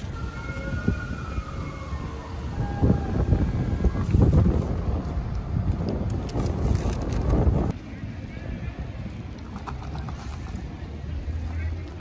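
Wind noise on the microphone outdoors, heaviest through the middle and dropping off about two thirds of the way in. Over the first two to three seconds a distant siren winds down in pitch.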